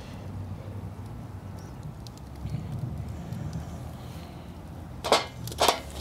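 Wood fire burning in a portable steel fire pit, with faint crackles over a low steady rumble, then two loud sharp pops about five seconds in as the burning wood throws sparks.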